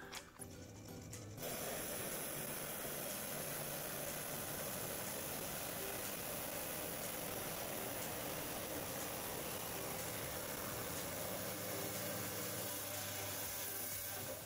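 Wet lapidary saw cutting through an agate nodule: a steady hiss of blade and water, starting about a second and a half in.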